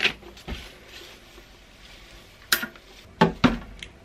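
An old paper sewing-pattern envelope is handled and smoothed flat on a padded ironing board: a few short paper rustles and light taps, the loudest about two and a half seconds in and two more near the end.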